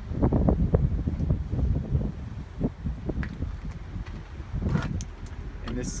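Wind buffeting a phone's microphone, a low rumble with scattered knocks and clicks from handling the phone.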